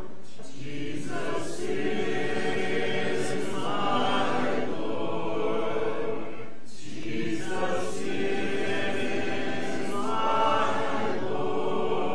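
Congregation singing an invitation hymn a cappella, voices only with no instruments, in long held phrases with a short break for breath about every six and a half seconds.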